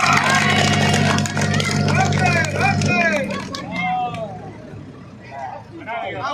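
Farm tractor's diesel engine running under load as it drives against a strongman holding it back. The engine sound drops away suddenly about three seconds in, with a crowd shouting and calling throughout.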